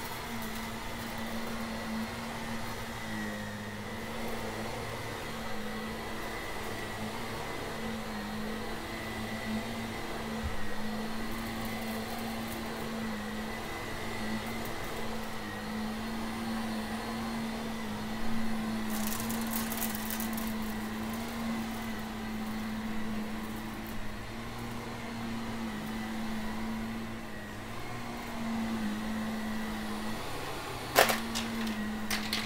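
Shark upright vacuum cleaner running steadily on carpet, a constant motor hum with a higher whine, as it is pushed back and forth. About two-thirds of the way in there is a short crackling burst as debris is sucked up the nozzle.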